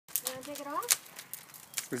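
Wood fire crackling in an outdoor stone fireplace: sharp, irregular pops and snaps throughout. A short vocal sound rising in pitch comes in near the start.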